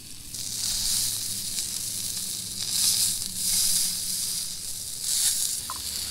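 Pike frying in butter in a cast-iron skillet on a canister camp stove: a steady sizzle that swells and eases in waves, with a low steady hum underneath.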